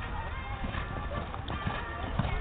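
Horse's hoofbeats, dull thuds on sand, as it lands over a show-jumping fence and canters on, with music and distant voices behind.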